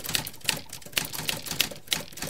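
Typewriter sound effect: a rapid, uneven run of key clacks, about five a second, as on-screen text types itself out letter by letter.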